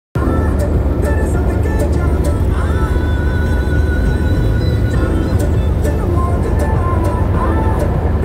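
Steady low rumble of a car's engine heard inside the cabin, with music and voices faintly over it.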